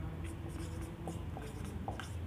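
Marker pen writing on a whiteboard: a run of short, faint scratching strokes and light taps as letters are drawn.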